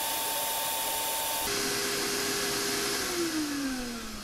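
Vacuum cleaner running, drawing air through a sock stretched over its nozzle: a steady hiss with a motor whine that is higher for the first second and a half. Near the end the whine falls in pitch and the sound fades as the motor is switched off and winds down.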